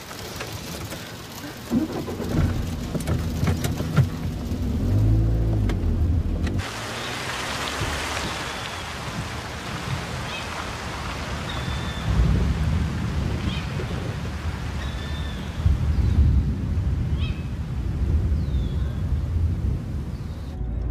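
Low engine rumble inside a car with a few sharp knocks. About six seconds in it cuts to steady rain, with low rolling rumbles of thunder and a car moving off.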